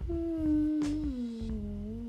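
A voice singing one long held note that slides down in pitch about a second in and stays lower, with a low rumble beneath and a short click about halfway through.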